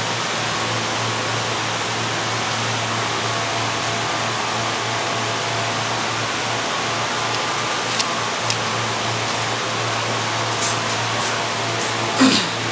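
Steady rushing noise with a low hum, with a few faint clicks about eight and eleven seconds in.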